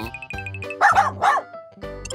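Cartoon puppy barking three short, high yips about a second in, over children's background music with a steady beat.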